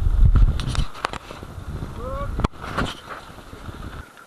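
Wind buffeting an action camera's microphone and rattles from riding a rough track, loudest in the first second, with a short pitched squeal about two seconds in and a sharp knock just after.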